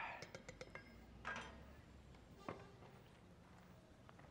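Faint handling noises from objects on a table: a few light clicks in the first second, a short rustle a little after, and one more click about two and a half seconds in.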